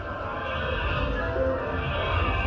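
Slot machine bonus-round music playing over a respin of its hold-and-spin feature, with stacked synth tones throughout.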